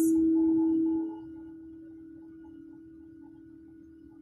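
Meditative background music: a sustained, bowl-like ringing tone that holds steady, drops in level about a second in, then fades slowly.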